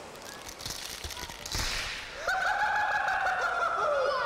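Faint surf and water noise, then a person's voice holding one long high note for about two seconds, sliding slowly downward.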